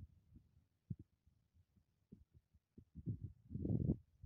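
Wind buffeting the microphone: irregular low thuds and rumble, sparse at first and building to a longer, louder gust near the end.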